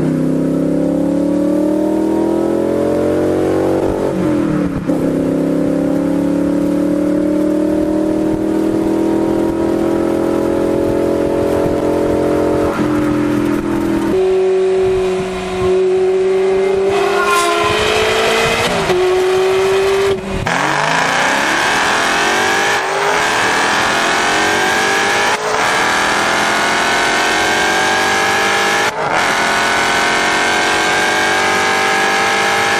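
High-performance car engines at wide-open throttle, accelerating hard through the gears: the engine note climbs steadily and drops back at each upshift, several times, ending in one long climb in pitch.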